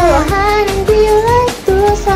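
High female voices singing a K-pop song in Korean over an upbeat pop backing track with a steady beat, holding long melodic notes.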